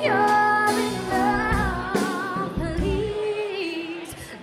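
Live pop ballad performance: a woman singing long, wavering held notes over a band with drums, the music dropping back briefly near the end.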